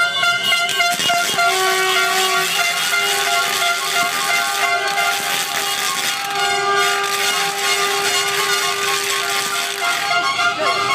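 Several car horns honking together in long held blasts that break off briefly and start again, over a steady din of street noise from traffic and people.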